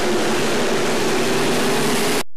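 Dirt-track modified race cars running at racing speed in a pack, their engines making a loud, steady, noisy sound with a faint hum of engine pitch underneath.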